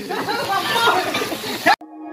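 People's voices talking and calling out, cut off abruptly near the end, where a steady low music tone begins.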